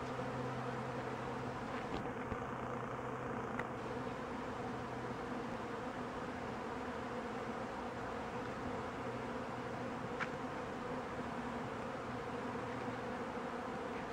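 Steady buzzing of a large mass of honey bees in flight around a hive being robbed, robber bees fighting the colony's own bees.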